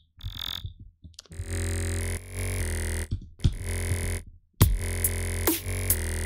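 Vital software synthesizer playing an init patch with the 'Clicky Robot' wavetable: a few sustained, buzzy electronic notes rich in overtones, separated by short gaps. Near the end, sharp clicks and quick falling pitch sweeps come in.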